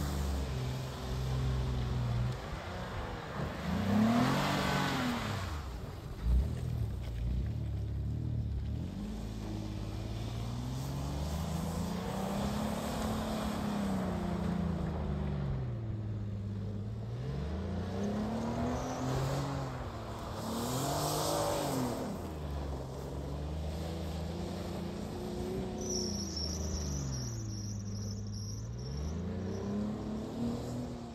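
A Hyundai SUV's engine revving up and down over and over as it is driven hard through mud, wheels spinning, with brief louder rushes of noise about four seconds in and again past the twenty-second mark.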